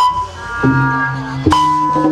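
Sundanese gamelan music for jaipongan: struck notes that ring on over lower held tones, with a fresh stroke roughly every half second to second.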